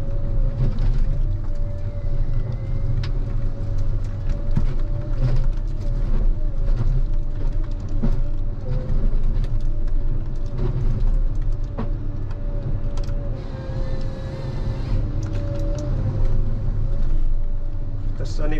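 Ponsse Scorpion King harvester running, heard from inside the cab: a steady engine drone with a steady higher whine over it. Frequent sharp knocks and cracks come as the H7 harvester head grips, feeds and delimbs a felled tree stem.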